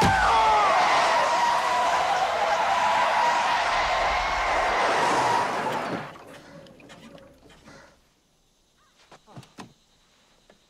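Car tyres screeching in a long skid under hard emergency braking, a steady squeal that lasts about six seconds and then dies away as the car comes to a stop. A few faint clicks follow near the end.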